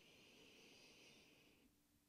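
Near silence with one faint, long breath through the nose, fading out about a second and a half in.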